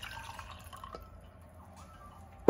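Faint drips of brewed green tea falling from a paper-filter tea dripper into the glass server below.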